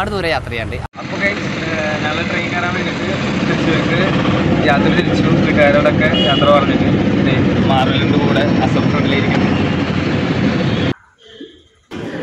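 Loud, steady vehicle cabin noise, engine and road rumble, with a man's voice talking over it; it cuts off abruptly about a second before the end.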